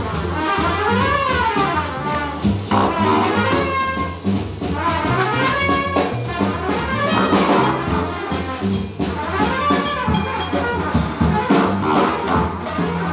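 Live jazz combo with a trumpet taking the lead, playing phrases that swoop up and back down, over upright bass, drum kit and congas.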